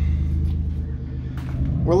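Pontiac Grand Prix engine idling steadily, a low even hum, left running just after being brought back from a dead battery.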